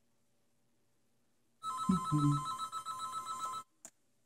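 A telephone ringing once, a trilling two-tone ring lasting about two seconds, followed by a short click as the call is picked up.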